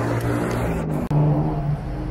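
Night street traffic noise: motor vehicles running past, a steady low hum with a brief drop-out about a second in where the recording is cut.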